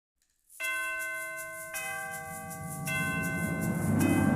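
Intro music opening with three bell-like chime strikes, about a second apart, each left ringing, over a music bed that swells toward the end.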